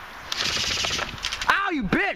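Airsoft electric gun firing full-auto, a rapid stream of shots that starts about a third of a second in and runs for about a second. A voice cries out near the end.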